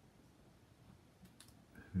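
Quiet room with a few faint clicks a little past the middle.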